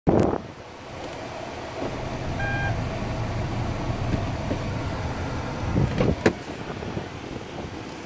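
Hyundai Avante's engine idling, heard as a steady low rumble inside the cabin, with the reversing camera on. A short electronic beep sounds about two and a half seconds in, and a couple of sharp knocks come about six seconds in.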